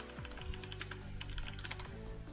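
Typing on a computer keyboard: a quick, irregular run of key clicks over quiet background music.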